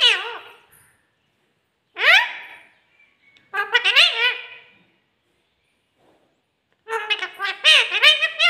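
A rose-ringed parakeet (Indian ringneck) vocalizing in four short bursts of high, squawky, speech-like chatter, each bending up and down in pitch. The last and longest burst starts about a second before the end.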